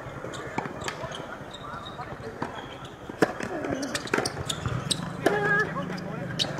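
A tennis ball bounced on a hard court in a series of short sharp taps as a player readies her serve, with other ball strikes around it, the loudest about three seconds in.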